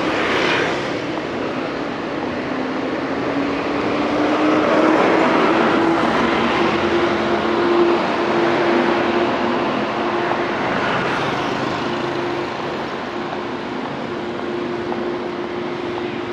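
Street traffic with motor scooters passing and a steady engine hum. The hum rises a little in pitch a few seconds in, then holds.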